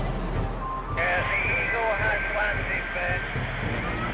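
A voice replying over a handheld two-way radio, thin and hissy, from about a second in until just before the end, over the low rumble of a bus engine and traffic.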